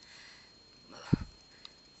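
A quick sniff about a second in, ending in a sharp low thump at the same moment; otherwise quiet room tone.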